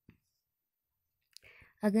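Near silence with a couple of faint clicks, then a woman's voice begins speaking near the end.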